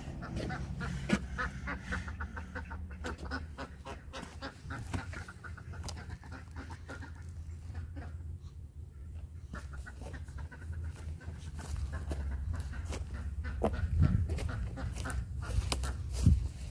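Chickens clucking in short calls, over a low rumble on the microphone, with a few knocks near the end.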